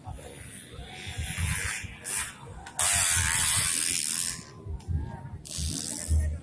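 Dirt bike engines buzzing and revving at a dirt race track, with a loud rushing hiss lasting about a second and a half in the middle.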